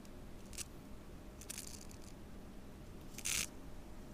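A Chinese painting brush stroking across paper: three short scratchy strokes, the last, about three seconds in, the loudest, over faint steady room noise.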